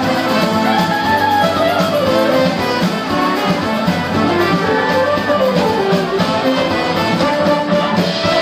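Live band music with a horn section of trombone and saxophone playing melodic lines over electric guitar and drums, loud and steady.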